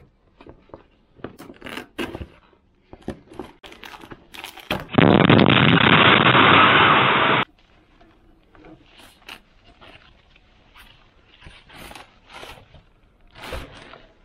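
A cardboard parcel being unpacked by hand: scattered clicks, scrapes and rustles of cardboard, tape and plastic wrapping. About five seconds in, a loud continuous noise lasts about two and a half seconds and cuts off suddenly.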